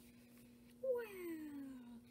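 A single drawn-out vocal call that starts just under a second in and slides steadily down in pitch for about a second, over a faint steady hum.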